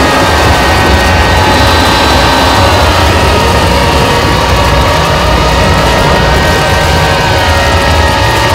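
Harsh noise music: a loud, unbroken wall of noise with a heavy low rumble and several sustained electronic tones, some holding steady and others drifting slowly up and down in pitch.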